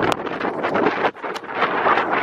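Wind buffeting a phone's microphone: a rough, uneven rushing noise with a brief dip about a second in.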